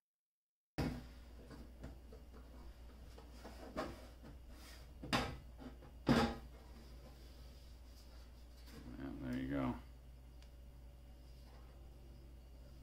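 Sheet-metal lid of a SunGoldPower inverter being pried and worked off its chassis: a few separate knocks and clanks, the loudest about five and six seconds in, over a steady low hum. About nine seconds in there is a short pitched, wavering sound.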